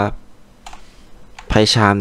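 A few faint computer keyboard keystrokes, sharp short clicks, followed about one and a half seconds in by a man speaking.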